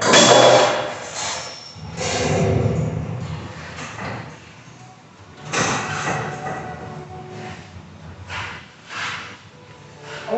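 Sound effects from the Carvana coin kiosk as its screen animation runs: a string of whooshes and thuds a second or so apart, the first one loudest.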